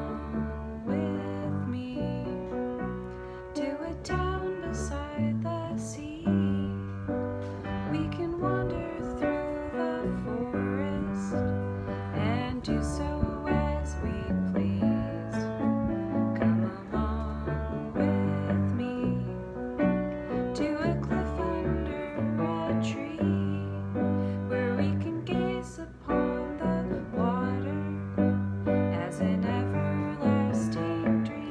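A woman singing a slow, gentle song to piano chords, with an acoustic guitar playing along. The piano is a little out of tune in its low notes.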